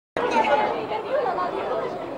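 A brief dropout to silence at the cut, then several people chattering in the background.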